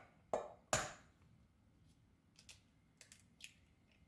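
Raw egg knocked twice against a stainless-steel bowl to crack its shell: two sharp knocks in the first second, then a few faint clicks as the shell is pulled apart.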